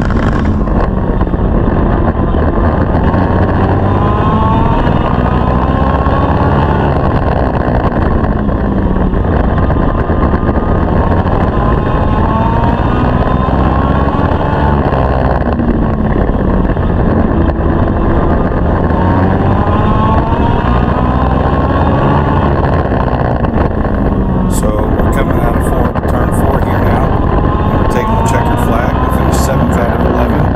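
Legend car's Yamaha four-cylinder motorcycle engine at racing speed, heard from inside the cockpit. Its note rises and falls over and over as it accelerates down the straights and backs off into the turns. A few sharp clicks come near the end.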